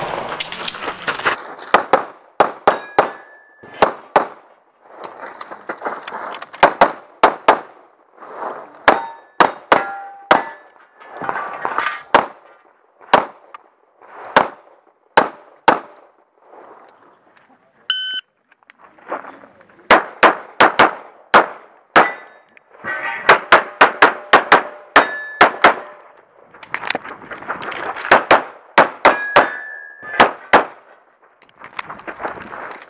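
Rapid strings of pistol shots with steel targets clanging and ringing after hits. A shot timer's electronic start beep sounds about 18 seconds in, and the strings of shots pick up again about two seconds later.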